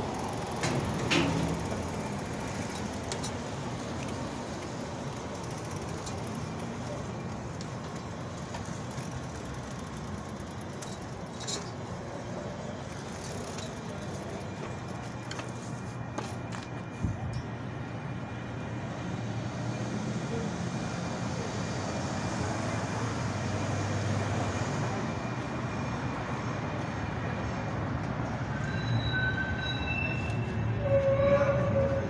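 Steady city street traffic noise from passing cars, with a few brief knocks, the loudest about a second in.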